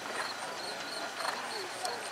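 Hoofbeats of a horse moving on sand arena footing, with faint voices in the background.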